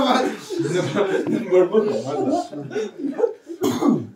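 People talking in a small room, with a short cough near the end.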